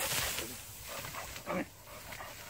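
Tall grain stalks rustling against the moving filmer, loudest in the first half second, with a dog panting close by.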